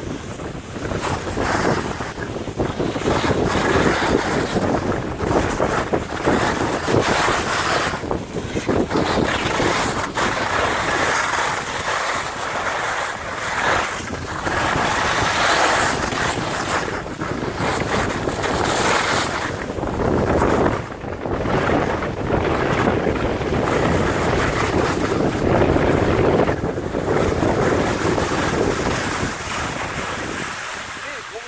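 Wind rushing over the microphone of a camera carried by a skier going downhill, rising and falling, mixed with the hiss of skis on snow. It eases a little near the end as the skiing slows.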